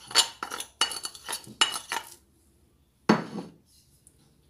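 Metal kitchen utensils clinking against dishes, a quick run of ringing clinks over the first two seconds, then after a pause one louder clatter about three seconds in.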